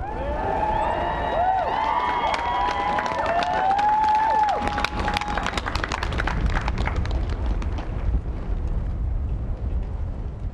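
Crowd applauding and cheering. Whoops and calls rise and fall over the first four or five seconds, then steady clapping carries on alone.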